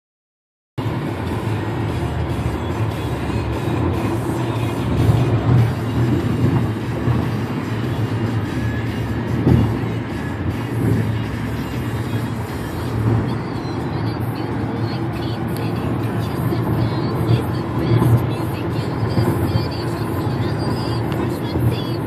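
Steady road and engine noise inside a Chevrolet car cruising on a freeway, with music playing over it.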